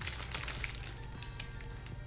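Clear plastic wrapping crinkling as it is handled, in irregular faint crackles that thin out after about a second, over faint background music.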